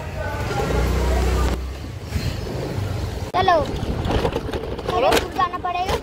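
Wind buffeting a phone's microphone as a low rumble, loudest in the first second and a half, with a few short, high-pitched exclamations from a girl's voice.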